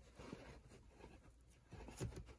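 Near silence with faint rustling and a few soft taps as fingers leaf through a stack of baseball caps, the fabric crowns and stiff brims brushing against each other.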